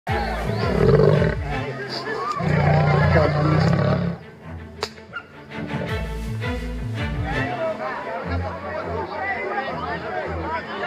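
A lion caught in a wire snare roaring twice, each call lasting about a second and a half, the second ending about four seconds in.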